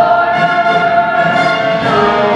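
Live stage-musical number: singing voices with a chorus over band accompaniment, holding long notes.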